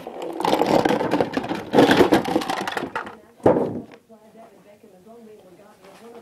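A cardboard toy box being handled and opened: a rustling, rattling clatter of packaging for about three seconds, then one short loud burst. Faint voices follow near the end.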